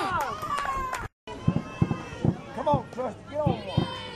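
High voices of softball players and spectators shouting and cheering. After a short gap about a second in, a quick, roughly rhythmic string of short shouted calls follows.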